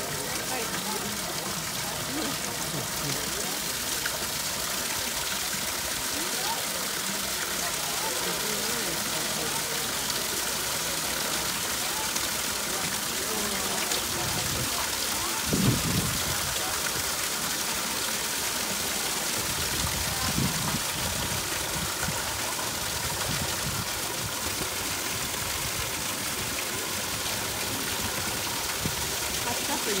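Steady rushing hiss of water flowing through a canal lock's sluices. People talk now and then, louder for a moment about halfway through.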